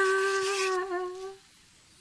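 A woman's voice holding a long sung note at one steady pitch, the drawn-out end of a "ta-da!". It wavers slightly and fades out about one and a half seconds in.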